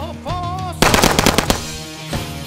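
A rapid burst of about ten gunshots in under a second, starting a little under a second in, over rock music.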